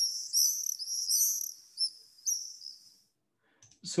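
Recording of a flock of swallows screeching: quick, high-pitched, repeated chirps that sound a bit distorted, stopping about three seconds in.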